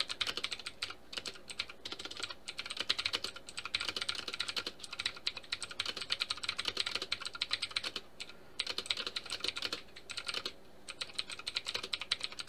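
Typing on a computer keyboard: rapid keystrokes in steady runs, with short pauses about eight seconds and ten and a half seconds in.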